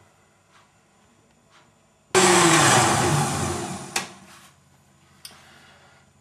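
Countertop blender motor blending a jar of fruit smoothie. The sound cuts in loud about two seconds in, then winds down with a falling pitch and fades over the next couple of seconds. A click sounds near the four-second mark.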